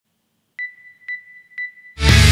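Three short electronic beeps, evenly spaced about half a second apart, each a single high tone that starts sharply and rings briefly.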